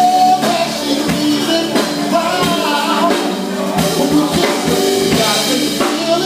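Live music: a singer's voice over a steady drum beat.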